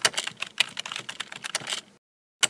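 Computer keyboard typing sound effect: a quick, uneven run of key clicks.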